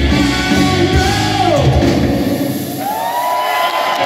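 Live hard rock band with distorted electric guitars, bass and drums. About a second and a half in, a note slides down in pitch. A little past halfway the bass and drums drop out, and a single note rises and is held over the thinned-out sound.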